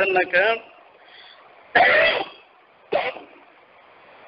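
A man coughing twice: a longer cough about two seconds in and a short one about a second later.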